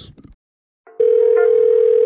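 A telephone dial tone comes in about a second in after a brief silence: one loud, steady, unchanging tone.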